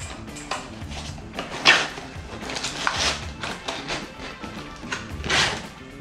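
Cardboard pedal box being opened and its packaging handled: a few short rustling, scraping bursts, the strongest about five seconds in, over quiet background music.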